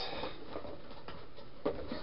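Hands rummaging in a cardboard shipping box, with low rustling of the box and packaging and a light knock near the end.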